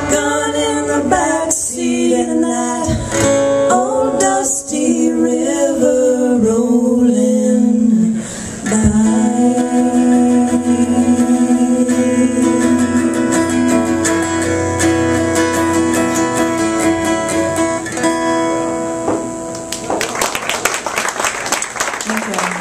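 Live acoustic band finishing a song: women's voices singing over strummed acoustic guitar and cajón, ending on long held notes. Audience applause begins about two seconds before the end.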